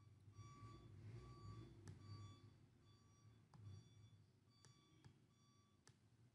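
Near silence, with a faint electronic beep repeating evenly about twice a second and a few soft clicks.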